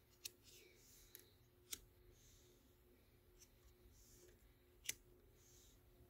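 Faint handling of laminated tarot cards: soft sliding sounds and a few light clicks as cards are shifted, the sharpest click about five seconds in.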